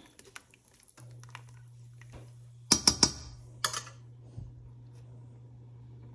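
Metal spoon clicking against a stainless steel stockpot: a quick cluster of sharp taps a bit under three seconds in and a few more about a second later, over a steady low hum.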